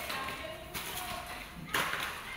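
Quiet room sound with light taps and a louder knock shortly before the end.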